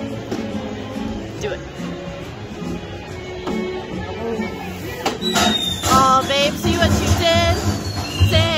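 Steady background music. About five seconds in, a theme-park prop's recorded firework effects start up, set off by pushing down a TNT plunger: sharp pops with a falling whistle and several warbling, wavering whistles, louder than the music.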